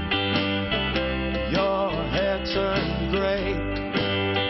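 Funky rock band playing live: electric guitar, bass, drum kit and hand drums, with a male voice singing through the middle.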